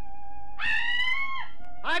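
A woman's short, high-pitched scream about half a second in, rising at the start and held for just under a second, over steady background music.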